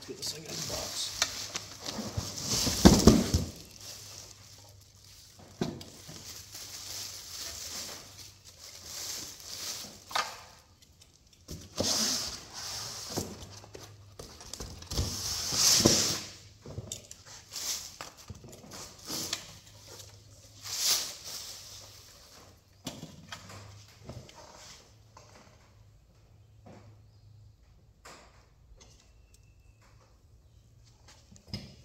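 Plastic wrapping crinkling and rustling in bursts as it is pulled off a new engine in a cardboard box, with a heavier thump of handling about three seconds in. It turns quieter near the end.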